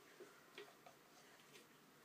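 Near silence: faint room tone with a few soft, short ticks.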